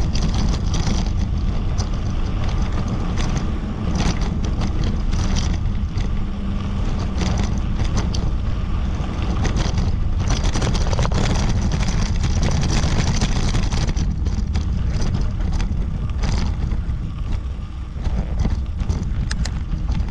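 Wind rushing over the camera microphone of a moving bicycle, with a steady low rumble of tyres rolling on a sandy dirt track and frequent small clicks and rattles from bumps.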